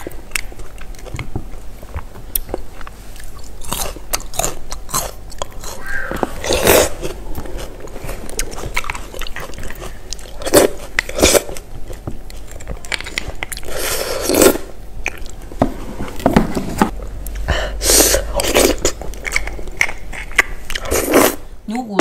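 Close-miked eating of roasted beef bone marrow: a metal spoon scraping marrow out of a split bone, with chewing and several louder wet sucking sounds from the mouth, the strongest of them coming in bunches every few seconds.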